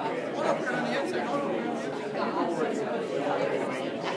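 Indistinct chatter: several people talking at once, with no single voice clear.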